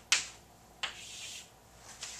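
Chalk on a blackboard: a sharp tap just after the start, then a second tap about a second in that runs into a half-second scrape as a horizontal line is drawn.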